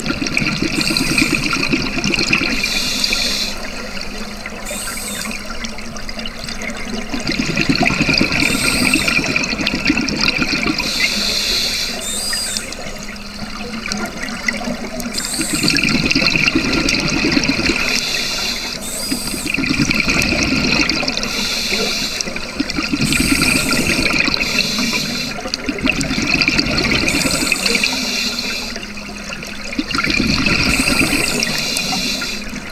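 Scuba diver breathing through a regulator, heard underwater: each exhale is a bubbling rush lasting a few seconds, followed by a quieter gap while breathing in. The cycle repeats about every seven or eight seconds.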